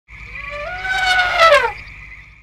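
Electronic intro sting: synthesized tones rising in steps over a fast pulsing low beat and a steady high tone, then sweeping sharply downward about a second and a half in and fading away.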